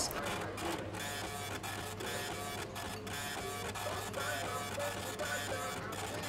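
Kitchen order-ticket printer printing, a fast, even chatter that runs without a break.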